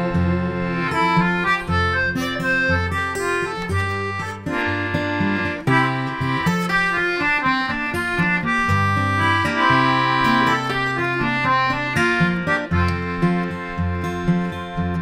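Instrumental break in an acoustic folk song: a reedy free-reed instrument plays the melody over guitar and a stepping bass line.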